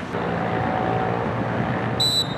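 A steady engine-like drone holding a few low, even tones.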